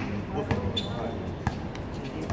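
A basketball bouncing on a hard court: two sharp bounces about a second apart, with players' voices behind.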